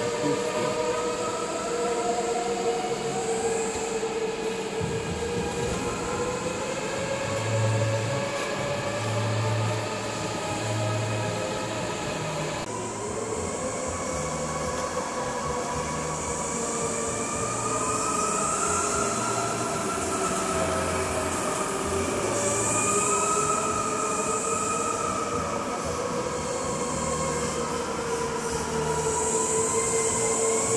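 Several go-karts lapping an indoor track, their motors whining steadily and gliding up and down in pitch as they speed up and slow down through the corners.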